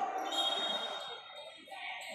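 Indoor futsal match in play: the ball striking and bouncing on the court and players' shoes on the floor, with shouting voices from players and spectators in a large, echoing sports hall. The sound quietens briefly in the second half.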